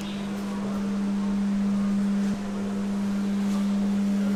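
A steady low-pitched hum on one tone, briefly dipping a little past halfway and then carrying on.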